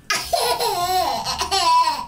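Baby laughing in a long, unbroken run of high-pitched laughter that starts just after a short pause.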